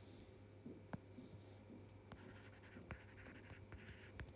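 Faint taps and short scratchy strokes of a stylus writing on a tablet screen, most of them in the second half, over a low steady hum.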